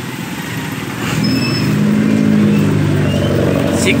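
A pickup truck's engine running close by, a steady low hum that grows louder about a second in.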